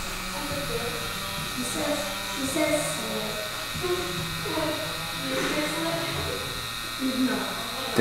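Electric tattoo machine buzzing steadily as the needle runs into the skin, lining the stencil outline.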